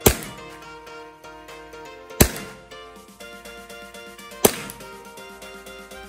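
Three single shots from an Action Army AAP-01 gas blowback airsoft pistol, each a sharp crack with the slide cycling, spaced a little over two seconds apart, over background music. It is being fired through a chronograph, reading about 92–93 m/s with the pistol fully stock.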